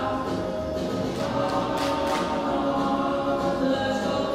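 A school choir singing sustained notes, with sharp 's'-like consonants cutting through about two seconds in.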